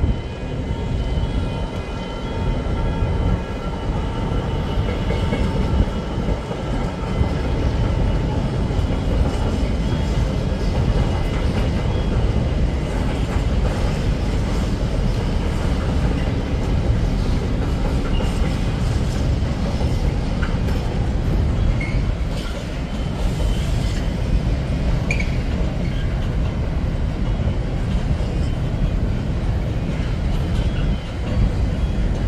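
Container freight train passing through the station: a steady, continuous rumble of the loaded wagons rolling over the track.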